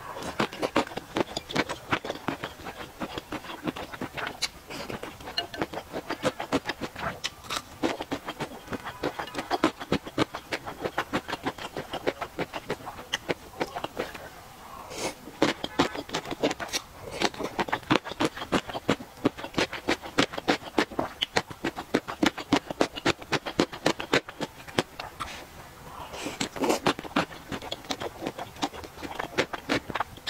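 Close-miked chewing of beef tripe and crunchy gongcai stems in spicy hotpot broth: a rapid, continuous run of wet crunches and mouth clicks, several a second, with brief pauses between mouthfuls.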